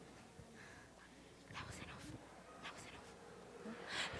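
Near silence: quiet hall room tone with a few faint, scattered sounds and soft voices in the background.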